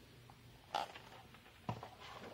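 Quiet room tone with two brief, faint noises: a soft one a little under a second in and a sharper click near the end.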